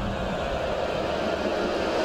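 A steady, noisy whooshing drone from a dramatic background-score sound effect, held at an even level with no clear tune.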